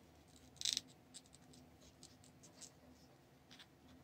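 Thin clear plastic crinkling and scraping under fingertips as a small mask is pressed and adjusted on a toy figure's head. There is one short crinkle about half a second in, then faint scattered ticks and scrapes.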